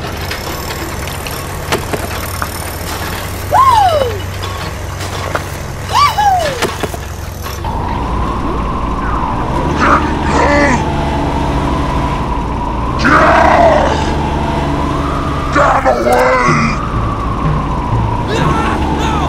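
Dubbed engine sound of a toy tractor running as a steady low drone, overlaid with cartoon sound effects: two falling whistles in the first half, then short squeaky voice-like chatter.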